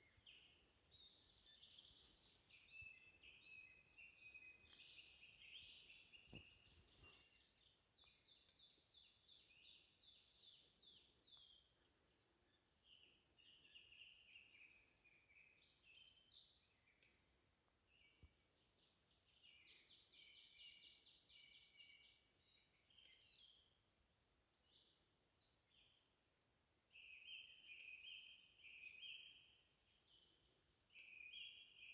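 Faint chorus of small songbirds: overlapping high trills and short song phrases, a little louder near the end.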